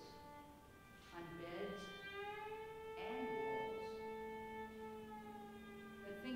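Slow live chamber music: long held notes that glide slightly in pitch, from violin and voice, with vocal syllables sung or spoken about one and three seconds in.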